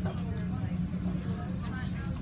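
Dining-room din: faint talk over a steady low hum, with a few light clinks.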